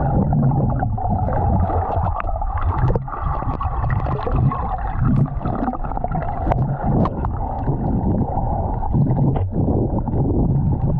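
Underwater sound picked up by a submerged camera while swimming: a dense, muffled rush and gurgle of moving water, with scattered sharp clicks throughout.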